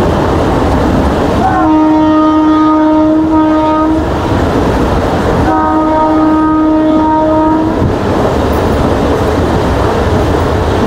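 Train horn sounding two long blasts, each about two seconds, the first rising into pitch as it starts. Underneath runs the steady rumble and wind noise of the moving train.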